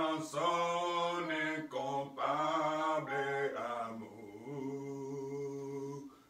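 A man singing a hymn solo and unaccompanied, in slow phrases of long held notes with short breaths between them.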